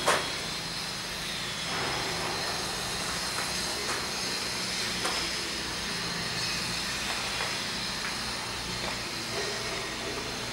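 Steady low hiss of background noise, with a sharp click at the start and a few faint ticks scattered through.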